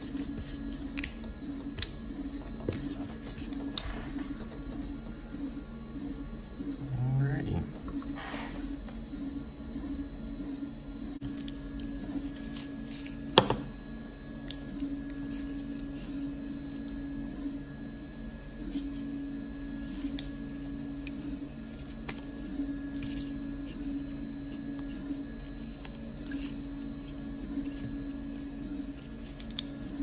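Scattered small clicks and taps of plastic and metal parts as a DeWalt DCD791 drill's trigger speed-control switch is pried apart by hand, with one sharper click about thirteen seconds in, over a steady low hum.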